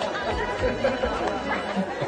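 Several people chattering at once in the background, an indistinct murmur of voices.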